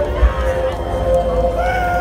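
Live heavy metal band playing loud through the stage PA, heard from the crowd: a held note with higher, wailing notes bending up and down above it, over a heavy low rumble.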